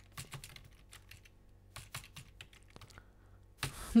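Computer keyboard typing: faint key clicks in a few short bursts with pauses between them as a line of code is entered.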